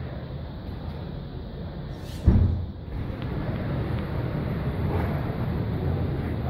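Steady low rumble of outdoor street noise, with one sudden loud thump a little over two seconds in.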